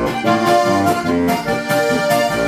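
Lanzinger Steirische diatonic button accordion playing a quick folk melody over held bass notes.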